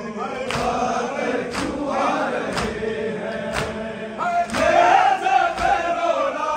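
A crowd of men chanting a noha, a Shia mourning lament, together, over sharp rhythmic beats about once a second, typical of matam chest-beating. About four seconds in, a louder high voice rises above the crowd.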